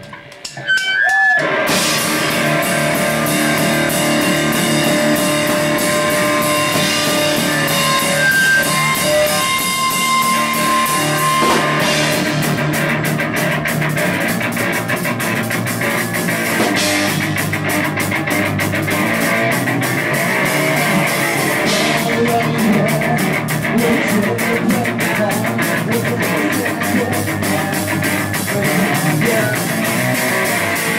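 Three-piece rock band playing live: electric guitar, bass and drum kit, starting about a second and a half in. The music grows denser about twelve seconds in.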